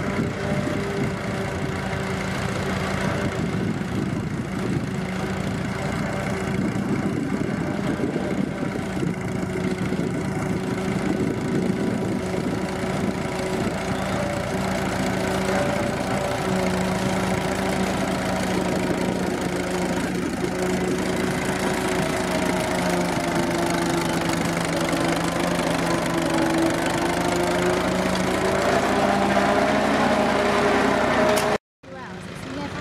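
Case Model C tractor's four-cylinder engine running steadily under load as it pulls a plough through heavy, sticky soil. Its pitch sags a little about three-quarters of the way through and picks up again near the end.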